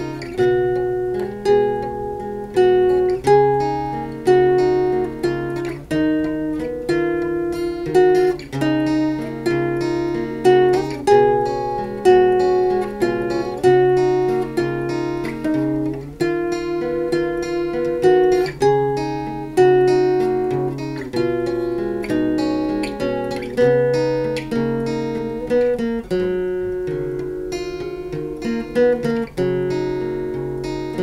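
Two acoustic guitars playing an instrumental piece together, plucked notes and strummed chords struck in a steady flow and ringing out between strokes.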